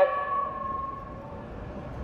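The end of a man's raised voice ringing on as a held tone that fades out about a second in, then a low, steady street background.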